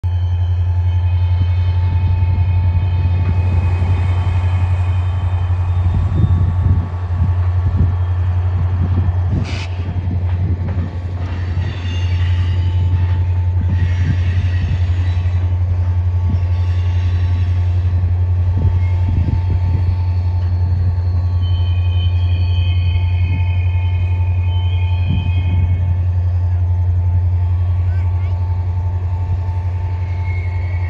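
Freight cars being shoved over a rail yard hump: a steady deep diesel locomotive drone throughout, with high-pitched wheel squeals that come and go, strongest in the second half, and scattered clanks from the cars.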